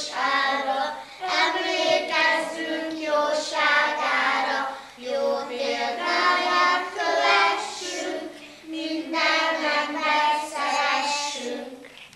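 A group of young children singing a song together in chorus. The singing stops just before the end.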